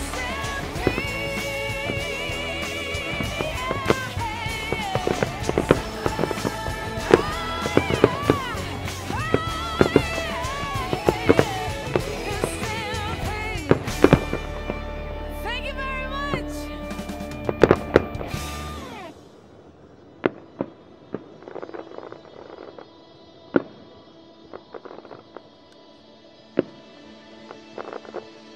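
Aerial firework shells bursting with sharp bangs over a music soundtrack with a singing voice. The music stops about two-thirds of the way through, leaving scattered, quieter firework bangs.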